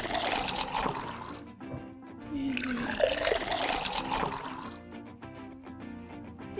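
Liquid pouring into a cup twice, each pour lasting about a second and a half, over soft background music.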